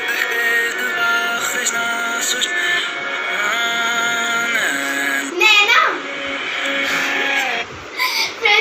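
A song played backwards: sung notes held long and swelling oddly over the music. About five and a half seconds in, a girl's voice breaks in loudly for a moment.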